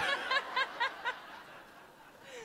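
Laughter into a microphone: a quick run of short, high-pitched laughs, about five a second, that fades out after about a second and a half.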